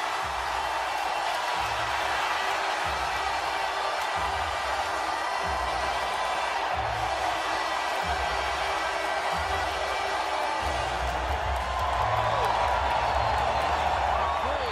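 Hockey arena crowd cheering a goal, with music and a low thumping beat underneath.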